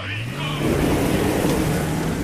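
Closing sound at the tail of a hip-hop track: a steady rushing noise over a low drone, with the beat and vocals gone.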